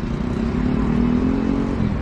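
Street traffic: a motor vehicle's engine hum over a low rumble, the hum rising slightly in pitch from about a second in.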